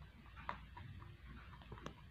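A rabbit eating dry pellets from a plastic feeder: faint crunching with a few sharp clicks, the clearest about half a second in and near the end.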